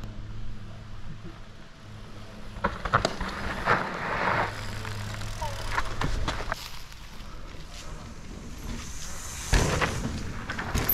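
Mountain bikes on a dirt trail: tyre and gravel crunching with scattered clicks and rattles, and a heavy thump near the end.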